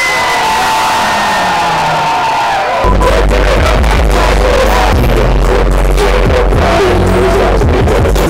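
Live hip-hop music through a club PA with crowd noise: a long held note for the first three seconds or so, then the backing beat drops in with heavy bass and runs on.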